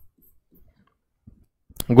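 Near silence with faint room tone, then a brief click near the end as a man's voice starts to speak.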